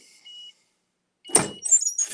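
Heat press being opened at the end of a press: a sharp clunk about a second and a half in, followed by a brief high squeak as the upper platen lifts. A faint short beep comes just before, near the start.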